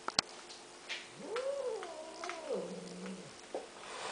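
Tabby cat giving one long, wavering yowl about a second in that sinks into a low, steady growl before breaking off: an angry, threatening cry. Two sharp clicks come right at the start.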